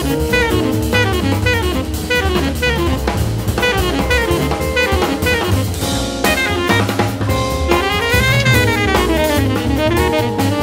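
Modern jazz group playing, with a busy drum kit under a fast melodic line that runs up and down in quick notes.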